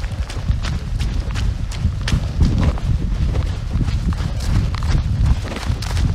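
Footsteps of a person moving on foot, sharp ticks a few times a second, over a steady low rumble of wind buffeting the microphone.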